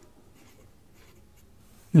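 Pen writing numbers on a paper workbook page: faint scratching strokes.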